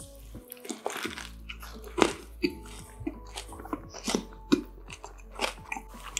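A person biting into and chewing a crispy fried-chicken burger close to the microphone, with a few sharp crunches spread through the chewing. Soft background music plays underneath.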